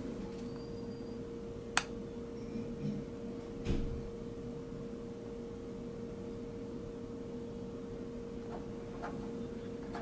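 Quiet room tone with a steady faint hum, broken by a single sharp click about two seconds in, a softer knock a couple of seconds later and a few faint ticks near the end: small handling noises around a fiber patch panel.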